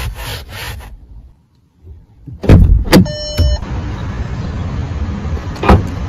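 A hand brushes over cloth seat upholstery in a few rubbing strokes. Then come two loud knocks, a short electronic beep and a steady outdoor hum. Near the end there is a sharp click as the car's boot-lid release is pressed.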